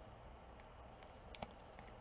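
Near silence broken by a few faint clicks and ticks from a small clear plastic zip bag with a ring inside being handled.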